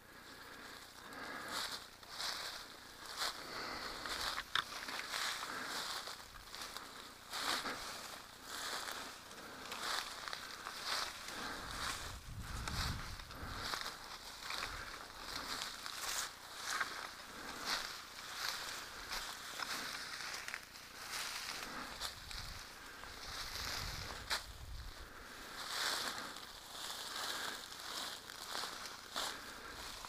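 Feet and legs pushing through dense undergrowth on a steep slope: continuous leaf rustling with irregular crunches and twig crackles at each step. There are two brief low rumbles partway through.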